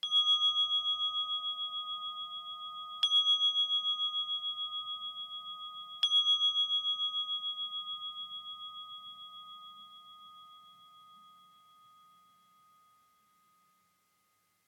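A meditation bell struck three times, about three seconds apart. Each ring wavers slowly as it dies away, and the last fades out over about eight seconds. It marks the end of the silent meditation period.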